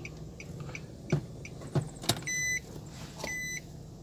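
A car's reverse-gear warning beeping inside the cabin. A few soft clicks come first, then a sharp click about two seconds in as the car goes into reverse. After that a high beep sounds once a second, each lasting under half a second.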